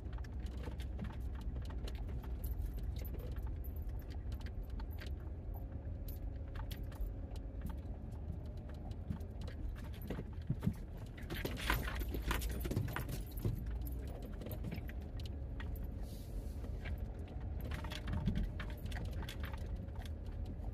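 Minivan driving slowly over a rutted dirt road, heard from inside the cabin: a steady low rumble from the engine and tyres under constant small jingling and rattling from loose items shaken by the bumps, busiest a little past the middle.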